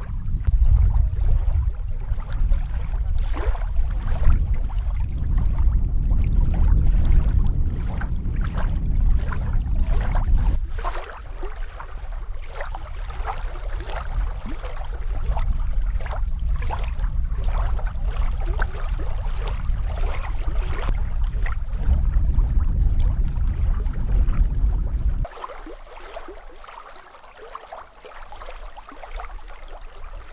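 Small lake waves lapping and splashing irregularly against a bare granite shore. A heavy low wind rumble on the microphone covers the first ten seconds and returns for a few seconds before cutting off near the end.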